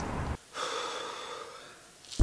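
A short breathy gasp from a person, cut off abruptly less than half a second in, followed by a faint fading tone and then near silence.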